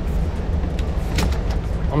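Steady low rumble of street traffic, with a few sharp clicks and knocks about a second in as the metal frame of a folding wagon is lifted at a glass door.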